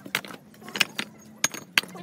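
Loose fired-clay bricks knocking and clinking against each other as they are lifted off a heap by hand: about half a dozen sharp, irregular clacks.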